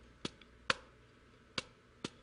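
Drumsticks tapping a practice pad: three sharp taps, the last coming after a pause of almost a second while a stick is tossed in the air and caught.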